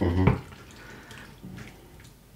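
Wooden spatula stirring a thick tomato and vegetable sauce in a frying pan: faint, wet stirring and scraping sounds.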